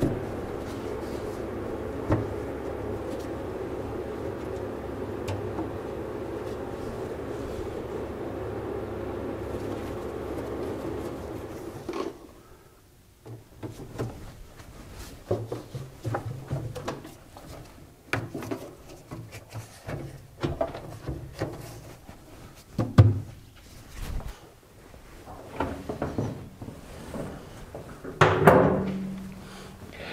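Scattered clunks, taps and knocks of a panel and tools being handled in a car's front trunk as its access cover is set back in place. A steady hum, typical of the garage heater, runs underneath and stops about twelve seconds in.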